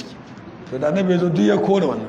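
A man's voice: after a short pause, one drawn-out, melodic phrase with a wavering pitch, lasting about a second.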